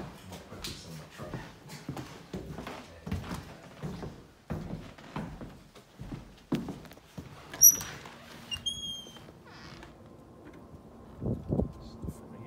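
Footsteps on a hardwood floor, then a front door being opened: a sharp click a little past halfway through, followed by a short, high squeak.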